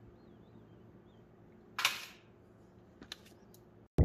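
Steel tongs clacking once against a stainless steel melting pot while lifting bismuth crystals, a sharp metallic hit about two seconds in that dies away over about half a second. Two faint clicks follow near the end.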